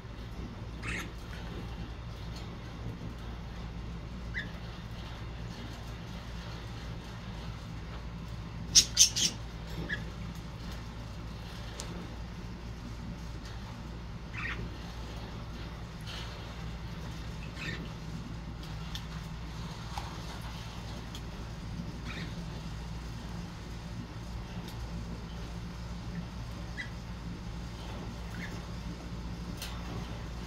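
Budgerigar bathing in a cage-side water dish: splashing and wing-fluttering in the water, with scattered short chirps over a steady low hum. A quick burst of loud sharp clicks about nine seconds in.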